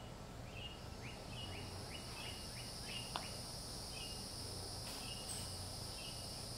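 Steady high insect buzzing that comes in about a second in, with short chirps repeating about every second and a quick run of six falling notes near the start. There is a single sharp click about three seconds in.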